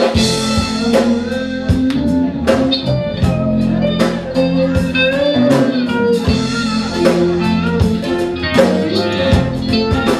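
Live blues-folk band playing: guitar over a drum kit keeping the beat, with notes that slide in pitch.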